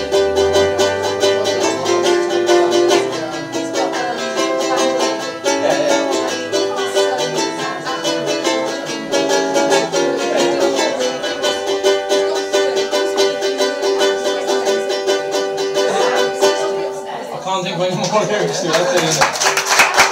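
Solo ukulele played with a fast strum in an instrumental run to the close of a song, breaking off about seventeen seconds in, after which a man's voice starts speaking.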